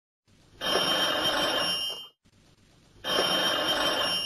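Old-style telephone bell ringing twice, each ring about a second and a half long with a pause of about a second between.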